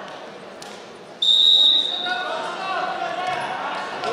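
A wrestling referee's whistle gives one loud, steady blast a little over a second in, lasting under a second, then voices and chatter fill the hall.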